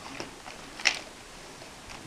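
Quiet handling of a torn plastic mailer bag and a small cardboard box on a table, with one short, crisp rustle a little under a second in.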